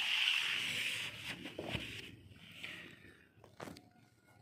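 Rustling of paper being handled, loudest in the first second and fading away, followed by a few light taps and knocks.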